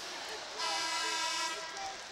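Arena horn sounding once: a single steady, buzzy tone lasting a little over a second, in the arena's crowd noise.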